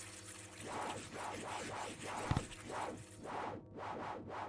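Cartoon sound effects for toy blocks whizzing about on their own: a quick run of soft whooshes, about three a second, with a low thud about two seconds in, over quiet background music.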